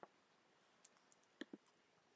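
Near silence: room tone, with a few faint, short clicks in the second half.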